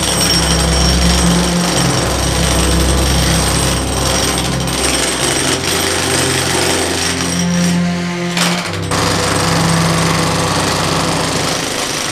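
Corded electric demolition hammer (jackhammer) running continuously, its chisel bit pounding through a cement floor slab.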